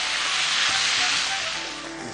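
Water poured into a hot pan of greens sautéed in oil, hissing and sizzling loudly as it hits the pan, then dying down toward the end. Background music plays underneath.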